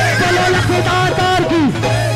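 Loud live devotional bhajan music over a steady low drone, with several wavering pitched voices or instruments. About one and a half seconds in, one line slides down steeply in pitch.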